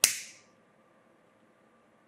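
A disposable flint lighter struck once: a sharp rasp of the flint wheel with a brief hiss that fades within about half a second.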